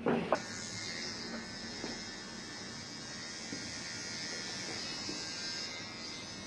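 Electric hair trimmer switched on with a click just after the start, then buzzing steadily as it trims the hairline at the nape of the neck.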